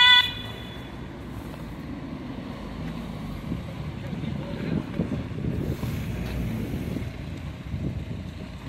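Road traffic running steadily, with wind on the microphone. Right at the start the last note of a two-tone emergency siren cuts off suddenly.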